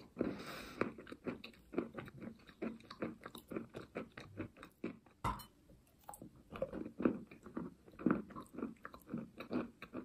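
Chalk coated in clay paste crunching and crumbling as a rapid, uneven run of small crackles. A sharper snap comes about five seconds in.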